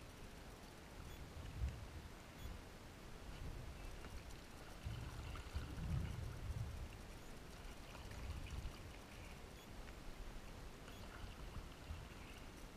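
Stand-up paddleboard paddle dipping and pulling through calm water, a few strokes with splashing and water trickling off the blade, over a low, uneven rumble.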